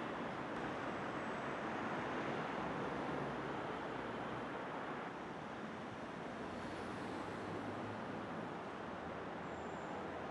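Steady street traffic noise: an even rush with no distinct events standing out.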